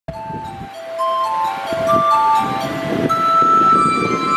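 Karaoke backing track playing its instrumental intro through loudspeakers: a melody of held notes stepping up and down over a low, busy accompaniment, growing louder about a second in.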